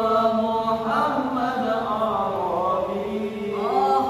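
A group of boys' voices singing an Arabic sholawat (praise of the Prophet) together, holding long notes that waver and slide in pitch.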